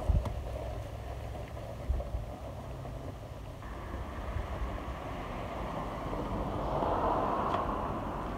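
Push broadcast spreader rolling over grass while it throws grass seed: a steady whirring rumble from its wheels and spinning impeller that grows louder as it comes close near the end.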